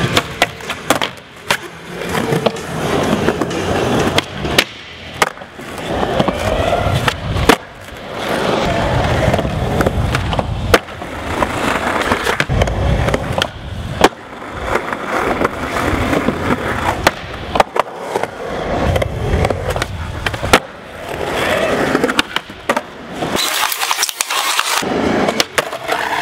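Skateboard wheels rolling on smooth concrete, with many sharp clacks from the board popping and landing. Near the end comes a loud, hissing scrape.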